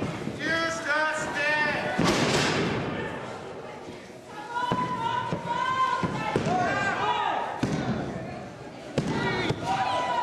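Wrestlers' bodies hitting a wrestling ring mat: a few thuds, the heaviest about two seconds in, amid shouting voices.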